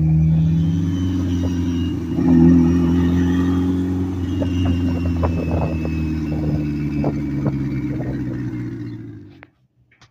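Turbocharged Subaru EJ engine running steadily with a low rumble, swelling briefly louder about two seconds in, with scattered light ticks over it. The sound cuts off suddenly near the end.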